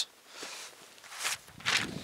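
Footsteps on snow: about three short crunching steps as someone moves over and bends to pick up dropped papers.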